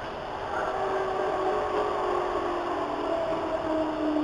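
Hamburg U-Bahn DT3-E subway train moving out of a station, heard from inside the car: the traction drive whines with a few steady tones that drift slowly lower, over the running noise of the train on the track.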